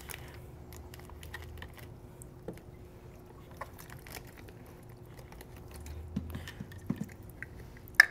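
Faint, scattered small clicks and crinkles from handling a plastic coral shipping bag and scissors over a bucket, with one sharper click at the very end.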